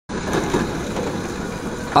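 Steady outdoor street noise, a low rumble with no distinct events.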